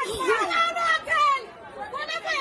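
Speech only: people talking, with no words clear enough to make out.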